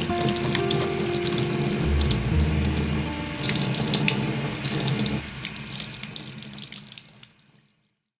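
Tap water running into a sink as soapy hands are rinsed under the stream, fading out about seven seconds in.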